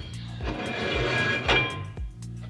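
Steel axle shaft being slid out of a 12-bolt rear-end housing: a metallic scrape with some ringing, then a knock about one and a half seconds in. Background music with a steady beat plays throughout.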